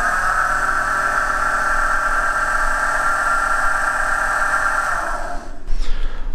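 Electric blower motor and fan of a 1949 Rover P3 heater-demister unit, run directly off a battery: a steady whine with a low hum beneath that cuts off about five and a half seconds in. It is a bench test of the rebuilt motor, now running in new bearings set in turned aluminium inserts, and it works well.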